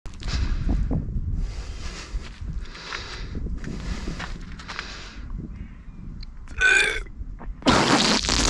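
A man breathing in a run of heavy, noisy breaths about once a second, then gives a short, pitched burp-like retch. Near the end a sudden loud gush starts as water spouts from his mouth and splashes on pavement: a regurgitated water spout.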